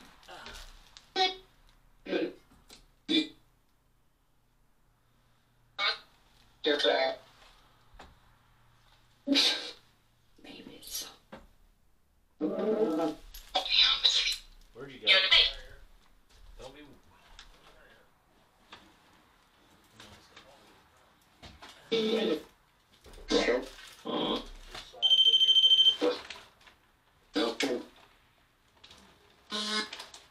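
Short, scattered voice-like word fragments from a Necromanic spirit-box app, each under a second long and a few seconds apart, with near quiet between them. About 25 seconds in, one steady, high electronic beep sounds for about a second.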